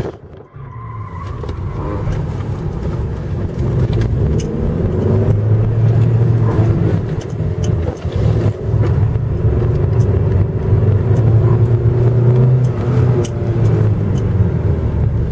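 Toyota Corolla's engine running under changing throttle while the car is driven through a precision-driving course. The engine note dips sharply at the start, builds over the next couple of seconds, then rises and falls repeatedly.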